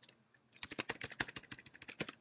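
Keys on a computer keyboard being typed in a quick run of clicks, starting about half a second in.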